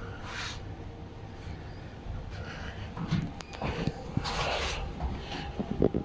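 Short rustling hisses and scattered clicks and knocks, busiest in the second half, over a faint low steady hum. The sounds are typical of a person moving and handling things in a small metal compartment.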